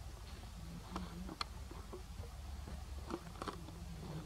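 A few light, sharp knocks and rustles as a young macaque scrambles through dry leaves onto a plastic mesh waste basket, over a steady low hum.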